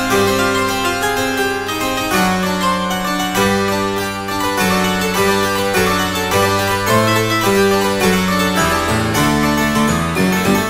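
Sampled French harpsichord played in full registration, its eight-foot and four-foot stops sounding together, in a slow chord progression with chords changing about once a second.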